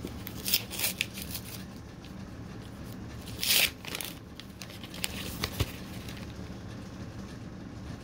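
A chocolate bar wrapper being torn open and crinkled in a few short rustles, the loudest about three and a half seconds in, over a steady low hum.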